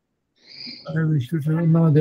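A person's voice over a video-call link, starting about half a second in with a short hiss and then speaking in drawn-out syllables.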